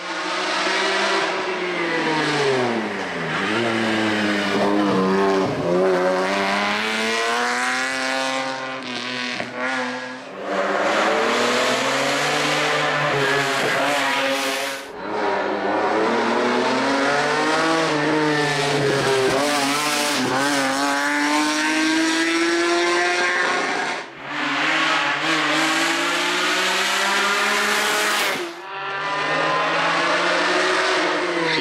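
BMW 3.5 CSL race car's straight-six engine running hard, its pitch climbing and dropping again and again with the gear changes and as the car passes. There are several short breaks where one pass cuts to the next.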